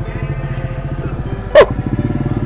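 A steady low droning hum with a pitched buzz, and one short vocal sound about one and a half seconds in.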